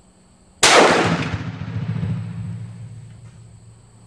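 One shot from a Hatfield single-barrel break-action 12-gauge shotgun firing a 1-ounce rifled slug, about half a second in. The sharp report echoes under the range roof and fades away over the next two seconds or so.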